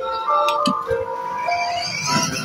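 A simple electronic melody in steady, jingle-like notes stepping from pitch to pitch.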